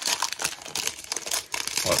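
Foil wrapper of a Panini Prizm Monopoly NBA trading-card pack crinkling as it is torn open by hand, a dense irregular crackle.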